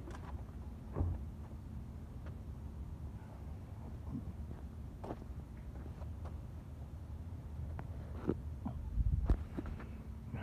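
Scattered knocks and bumps as a metal water heater is shoved and shifted into the cargo area of a minivan, with a louder thump about a second in and a cluster of knocks near the end.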